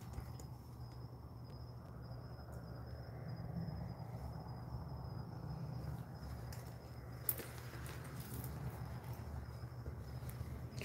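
A faint, steady high-pitched insect trill over a low room hum, with a light click about seven seconds in.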